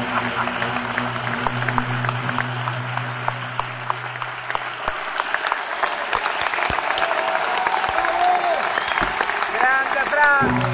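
Concert audience applauding, a dense patter of many hands clapping. A low steady tone from the stage sounds under it for the first half, then stops. Near the end a voice calls out over the clapping.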